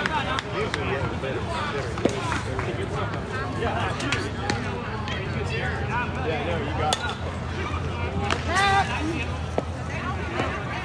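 Chatter and calls of softball players and spectators in the background, with a few short, sharp knocks, the clearest about two and about seven seconds in.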